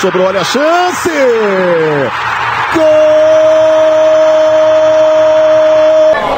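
A football TV commentator shouting excitedly as a shot goes in, his voice swooping up and down. About three seconds in he breaks into one long, steady held goal cry.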